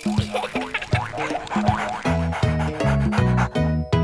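Upbeat children's background music: a fast run of percussive strikes, with a bouncing bass line joining about halfway through.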